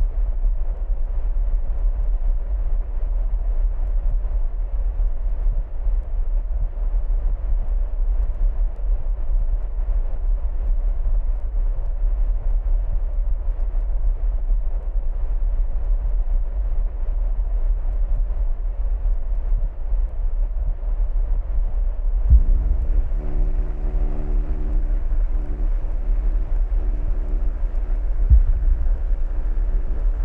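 A heavy, deep rumbling noise drone in an experimental music piece, steady throughout. About two-thirds of the way in, a chord of held tones enters above it, with a low thud there and another near the end.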